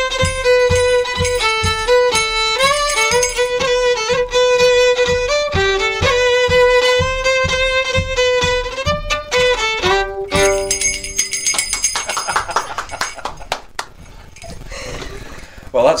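Solo fiddle playing a lively festive tune over a steady low beat, ending on a held note about ten seconds in, followed by quieter, unpitched noise.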